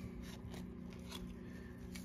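Faint sliding and rubbing of trading cards being moved through a stack by gloved hands, with a few light ticks in the first half, over a steady low background hum.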